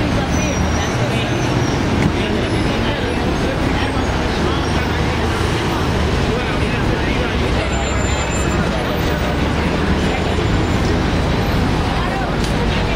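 City street noise: steady traffic with a low engine hum from idling vehicles, under the indistinct chatter of people nearby.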